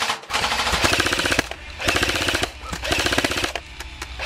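Airsoft electric rifles firing on full auto: four rapid bursts of mechanical clicking, each under a second, with short pauses between.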